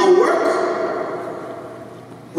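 A man's raised voice through a PA system: a short shouted exclamation right at the start that dies away over the rest of the moment.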